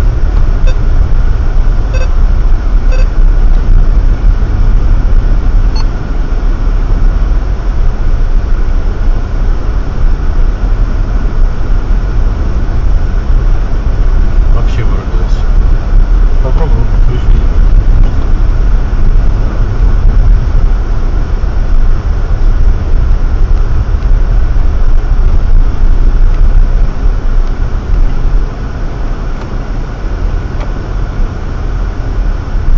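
Steady in-cabin road noise of a car driving on a snow-covered road, picked up by the dashcam's microphone: a loud, constant low rumble of tyres and engine.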